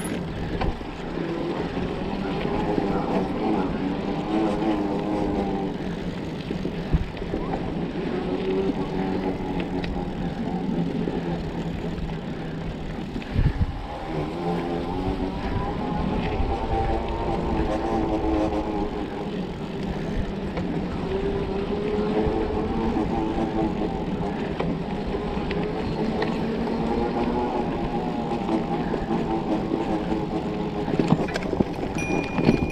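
Mountain bike rolling over a dirt trail: a steady hum that rises and falls in pitch with the bike's speed, with rolling noise and wind on the microphone. A few sharp knocks come from bumps, one about 7 seconds in and another at about 13 seconds.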